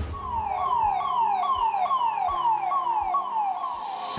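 Ambulance siren sounding in a fast repeating pattern, about two and a half falling sweeps a second, each dropping in pitch and then jumping back up. It cuts off just before the end.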